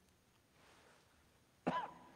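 A single short cough near the end, followed by a faint lingering ringing tone.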